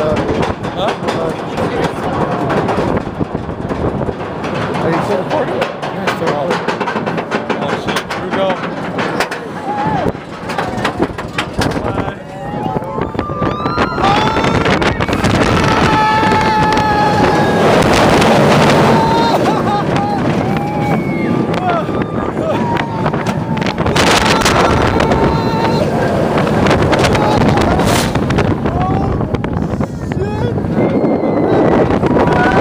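Roller coaster ride: wind rushing over the microphone and the train rumbling along the track, with riders screaming and yelling. It grows louder about halfway through, when long screams ring out over the noise.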